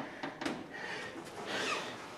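Quiet room noise with a couple of faint clicks and a soft rustle.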